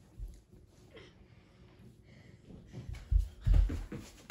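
Dull thuds of bare feet and hands striking a carpeted floor as a child runs into a cartwheel, one light thud near the start and several heavier ones in the last second.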